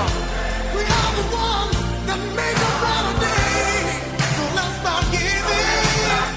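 A romantic pop ballad playing: a solo singer's voice over bass and drums keeping a slow, steady beat.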